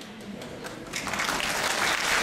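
Audience applauding: scattered claps at first, swelling into full applause about a second in.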